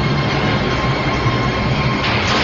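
Tanker truck and nearby pursuit vehicles running at speed, their engines and tyres making a loud, steady, heavy rumble.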